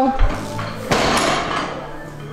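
Loaded deadlift barbell, about 661 lb, lowered from lockout and set down on the floor: a low thud just after the start, then one sharp impact about a second in.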